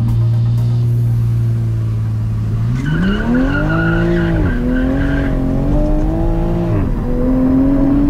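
2020 Toyota Supra's turbocharged 3.0-litre inline-six held at steady revs, then climbing sharply as the car launches with traction control off, the tyres squealing for about two seconds. The revs drop twice as the gearbox upshifts in manual mode, climbing again after each shift.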